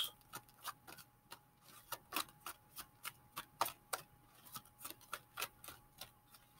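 A deck of oracle cards being shuffled by hand: faint, light clicks and taps of card on card, about three or four a second, slightly irregular.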